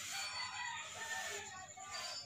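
A rooster crowing in the background.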